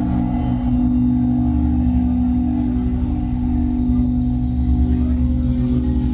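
Heavily distorted electric guitars and bass holding one sustained, droning chord without drums, played live through a club PA in a sludge metal song. The chord rings steadily, with a deep low end.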